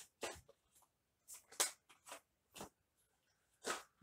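Tarot cards being handled: about six short, soft swishes and taps as cards are drawn from the deck and one is laid down on the cloth-covered table.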